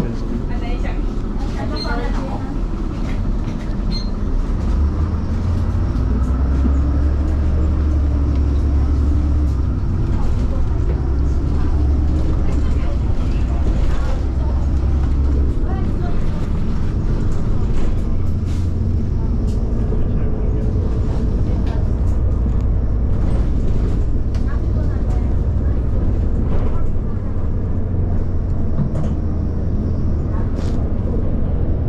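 Inside a moving city bus: the steady low rumble of the engine and road, with the engine note rising and falling a few seconds in, and scattered clicks and rattles from the cabin.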